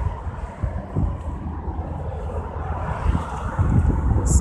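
Low, steady rumble of street traffic with wind buffeting the microphone.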